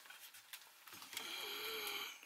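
Faint whirring of a small motor, starting about a second in, with a slightly wavering pitch.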